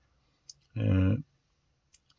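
A man's voice holding one short hesitation syllable, like 'eh', about a second in, with a faint click before it and another near the end.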